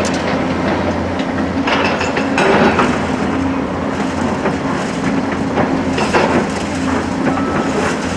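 Diesel engines of Caterpillar tracked hydraulic excavators running steadily at a low drone, with the scraping, crunching and clattering of concrete demolition rubble being worked by the buckets.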